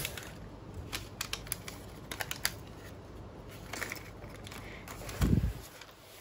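Plastic blind-bag packet crinkling and rustling as it is torn open and emptied, with small clicks of plastic toy bricks being handled. A dull thump about five seconds in.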